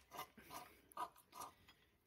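A few faint, short metallic clicks as a wrench rocks the intake cam phaser of a GM 3.6L V6 by hand. The phaser turns when it should be locked at rest, the sign of a failed cam phaser.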